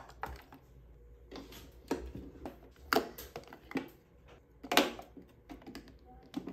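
Plastic makeup containers being set down and handled in a clear acrylic organizer: a handful of separate sharp plastic clicks and taps, the loudest about five seconds in.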